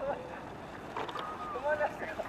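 Children calling out in short, high-pitched cries, three times, over a steady hiss.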